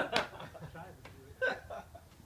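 Two short, breathy vocal sounds from a person, one right at the start and one about a second and a half in, without words.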